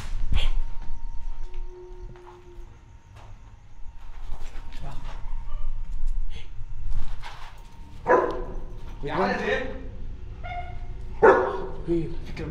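A German shepherd giving a few short barks and whines in the last four seconds, after a stretch of scattered faint knocks.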